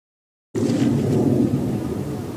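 A loud, steady low rumble that starts abruptly about half a second in, after silence.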